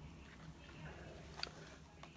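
Near silence: faint room tone with a low steady hum and one soft click about one and a half seconds in.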